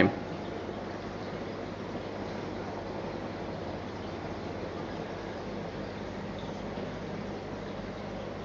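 A steady, even hiss with a faint low hum under it and no distinct events: background noise of running equipment and room tone.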